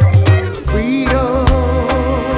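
Roots reggae music: a deep bass line and drums, with a held, wavering melody line sliding in about a second in.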